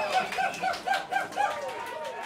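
Audience cheering and clapping after a song ends, with one voice giving a quick run of short hooting whoops, about four or five a second.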